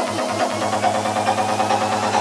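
Progressive psytrance track: a rolling bass line whose pulsing beat drops out about half a second in, leaving a steady low bass drone under the synths.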